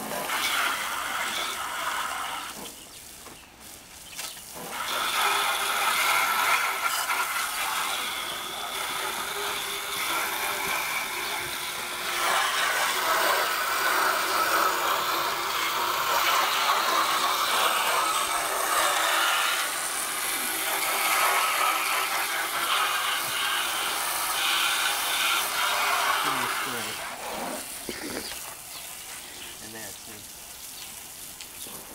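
Garden hose spray nozzle hissing as its jet of water beats on the car's roof, glass and rear window louvers. It eases off briefly about three seconds in and dies down near the end.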